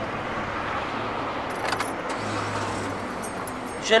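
Steady car and road noise, with a brief light jingle of small metal clicks about one and a half seconds in.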